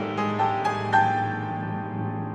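Grand piano striking chords over sustained string orchestra tones, the loudest chord about a second in.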